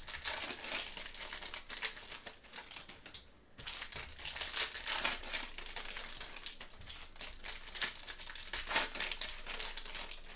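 Foil trading-card pack wrappers crinkling and crackling as gloved hands open the packs and handle the cards, with a brief lull about three seconds in.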